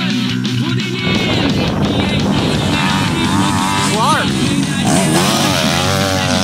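Dirt bike engines running on a motocross track, coming in about a second in, their pitch rising and falling as the riders rev, mixed with background music.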